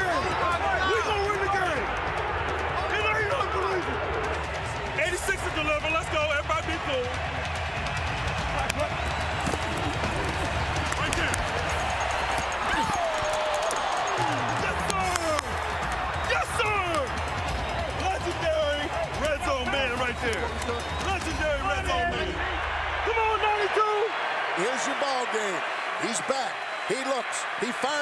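Shouting voices and football stadium noise over background music with a steady bass line. The bass drops out about four seconds before the end, leaving the voices.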